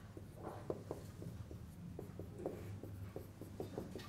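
Dry-erase marker writing on a whiteboard: a quick, irregular run of short taps and strokes as symbols are written, over a steady low hum.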